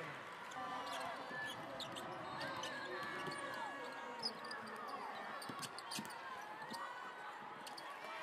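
Live court sound of a basketball game: the ball bouncing on the hardwood floor and sneakers squeaking, over the murmur of the arena crowd. There are two sharp, louder impacts, about four seconds in and again about six seconds in.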